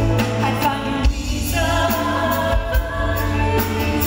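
Live band performance with a woman singing lead: a sustained sung melody over drums and a low bass line.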